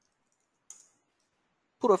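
A single short computer input click, a keystroke or button press, about two-thirds of a second into near silence. A man's voice starts speaking near the end.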